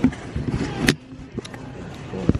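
Loaded plastic shopping cart rolling and rattling across a store floor, with items in it knocking together; a sharp knock a little under a second in is the loudest sound.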